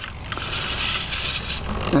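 Hobby RC servos driving the turret's pan and tilt, their gears whirring and grinding in a continuous buzz as the barrel swings through its travel.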